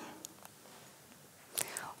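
A pause in a woman's speech: near-silent room tone, then a short, soft breathy vocal sound about one and a half seconds in, just before she speaks again.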